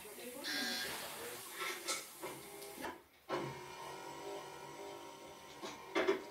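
Film soundtrack playing through a television's speakers: mechanical whirring and clicking from the gadgets in Doc Brown's lab. The sound cuts out briefly about halfway through, then a steady machine hum follows.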